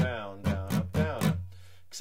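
Acoustic guitar strummed in a steady rhythm, about five strokes in the first second and a half, then the last chord rings and fades.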